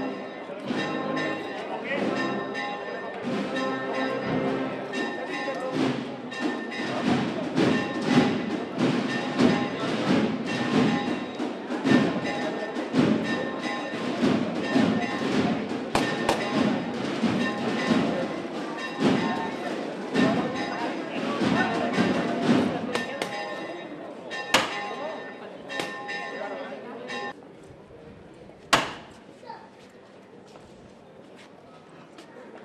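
Church bells pealing with rapid strikes over crowd voices; the ringing dies away a few seconds before the end. A couple of single sharp knocks sound near the end.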